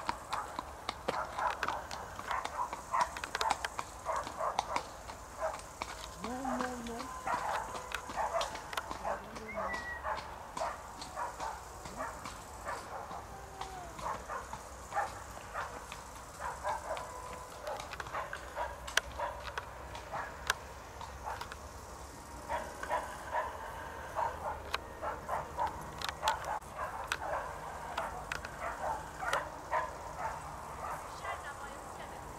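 Footsteps and a horse's hooves clopping on a paved lane, several steps a second, thinning out in the middle and picking up again near the end.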